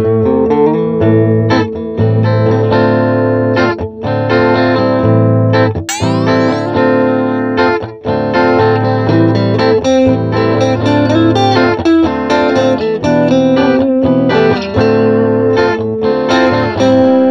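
Amplified Ibanez GIO electric guitar with two IBZ-6 humbuckers playing a demo phrase of picked single notes, with a fast slide up the neck about six seconds in. From about eight seconds the humbucker is coil-split.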